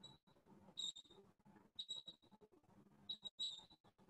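Near silence: faint room tone, broken by a few brief, faint high-pitched chirps about once a second.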